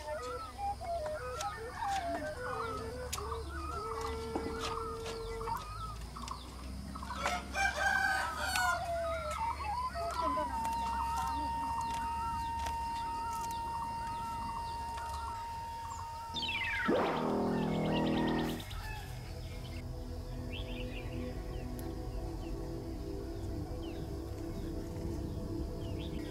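A rooster crows once, a call of about two seconds around seventeen seconds in, over soft background music with a long held note and chirping birds.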